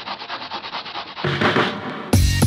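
Yautia root being grated by hand on a metal grater in quick, even strokes. The grating stops a little over a second in and gives way to a different, louder sound.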